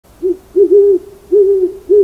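An owl hooting: a run of four low, even hoots, the second broken into two parts and the third the longest.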